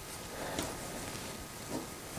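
Faint handling of linen fabric as a hem is folded under and pinned by hand, with a couple of small ticks.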